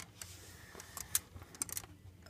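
A few light clicks and taps, about five over two seconds, as a die-cast model stock car is handled and moved on a wooden tabletop, over a faint low hum.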